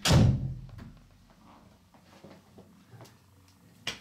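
An interior door shutting with a single loud thud, its low boom dying away within about half a second. A few faint ticks follow, and a short click near the end.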